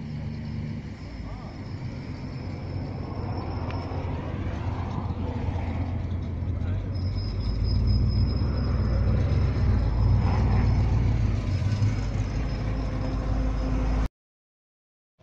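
A motor vehicle engine running with a low rumble that grows louder through the second half, with a faint steady high whine over it and voices in the background.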